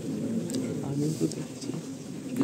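A man's voice speaking at the podium microphone, quieter than the speech around it; the words are not made out.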